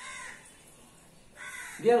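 A crow cawing once, a short harsh call at the start.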